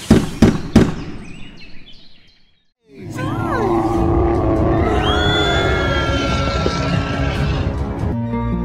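Three loud bangs in quick succession in the first second, fading away to silence. About three seconds in, cartoon music starts with sliding and held tones.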